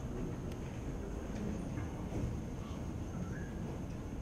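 Room tone of a hall: a steady low hum with a faint steady high whine and a few faint clicks, and no clear event.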